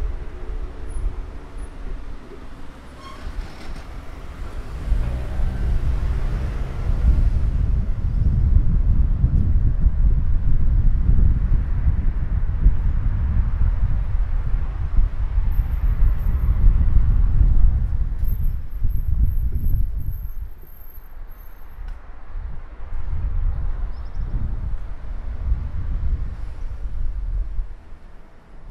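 Wind buffeting an exposed handheld recorder's microphone: a loud, uneven low rumble that builds about four seconds in and eases after about twenty seconds. A car engine passes at the start.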